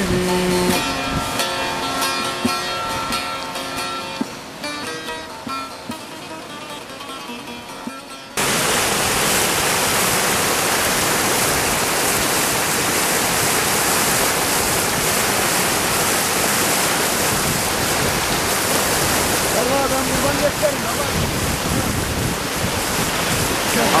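Bağlama (long-necked saz) strummed, the last sung note ending just after the start, the playing fading out over about eight seconds. Then an abrupt cut to the loud, steady rush of whitewater tumbling over rocks in a fast stream.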